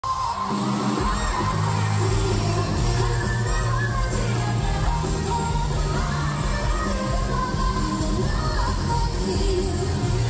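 Live K-pop concert music: a girl group's amplified singing over a steady bass beat, with the arena crowd cheering underneath.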